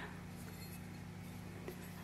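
Quiet room tone with a low steady hum, and one faint click near the end.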